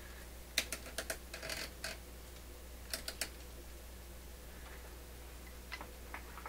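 Light clicking and tapping of an amplifier board and its parts being handled and set into a record player cabinet. There is a quick run of sharp clicks in the first two seconds, three more about three seconds in, and a few faint taps near the end.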